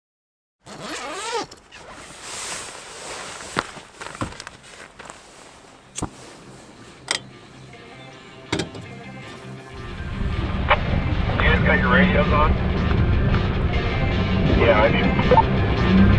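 A few sharp clicks and knocks over a quiet background. About ten seconds in, a lifted Nissan Frontier pickup takes over, its engine and tyres rumbling steadily as it drives a dirt road.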